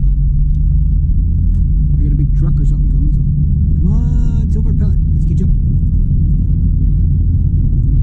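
Steady low engine and road rumble heard inside a car's cabin while driving at highway speed. A short high voice sound cuts in briefly about four seconds in.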